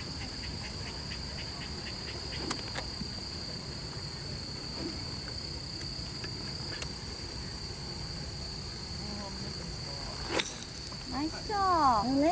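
A steady high-pitched chorus of insects runs throughout. About ten seconds in comes one sharp crack of a 6-iron striking a golf ball off the tee, followed by voices near the end.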